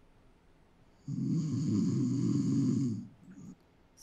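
A person snoring: one loud snore starting about a second in and lasting about two seconds. It is a recorded snoring sound effect being played back.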